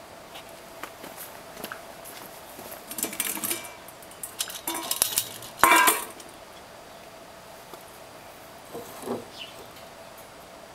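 Metal camp cooking pot handled: its lid lifted off and set down and its wire bail handle raised, giving scattered metal clinks from about three seconds in, a loud ringing clank near the middle, and a few light clinks near the end.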